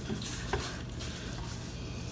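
Faint handling noise of a plastic action figure: hands brushing over it and one small click about half a second in, over a steady low hum and hiss.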